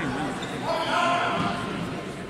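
Voices talking in a large, echoing sports hall, with dull thuds among them.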